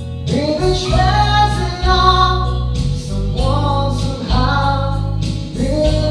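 A man singing a slow, sustained vocal melody into a microphone over instrumental accompaniment with a steady bass line.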